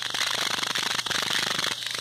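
Handling noise on a handheld phone's microphone: a dense, continuous crackling rustle, as loud as the voice around it.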